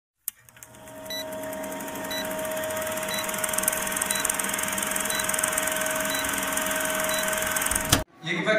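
Old film-countdown sound effect: a steady projector whirr with film crackle and a constant hum, marked by a short high pip about once a second. It fades in over the first couple of seconds and ends in a sharp click.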